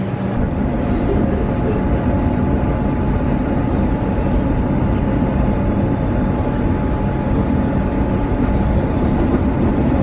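Passenger train carriage in motion, heard from inside: a steady rumble of the train running along the track, with a faint steady high tone over it.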